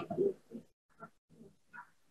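A few faint, brief murmurs of a person's voice in a pause in the talk.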